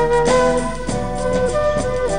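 Flute playing a melody of held notes that step from pitch to pitch, over a band accompaniment with a steady percussive beat.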